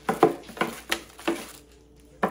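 Clear plastic packaging bag crinkling in a handful of short, sharp crackles as a plastic divider is pulled out of it, dying away near the end.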